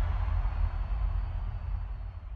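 Dying tail of a logo-intro sound effect: a deep rumble and hiss slowly fading away, with a faint thin high tone held over it.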